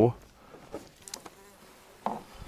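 Faint, intermittent buzzing of a flying insect.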